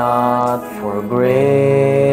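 A man and a woman singing a slow Christian song together, the phrase settling into a long held note about a second in.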